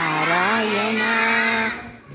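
Children singing a Hindu devotional bhajan: one melodic line of long held and gliding notes that fades out just before the end, at a pause between phrases.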